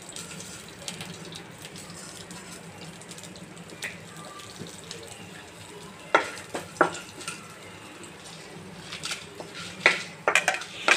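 Whole spices frying in a nonstick kadai with a steady soft sizzle. A wooden spatula stirs them, scraping and knocking against the pan a few times in the second half, most sharply about six and seven seconds in and again near the end.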